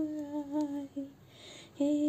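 A woman humming a devotional chant tune in long held notes, breaking off briefly about a second in and resuming near the end.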